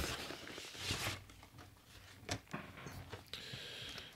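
Faint handling noises of a small plastic action figure close to a microphone: a soft rustle about a second in and a sharp little click a little after two seconds.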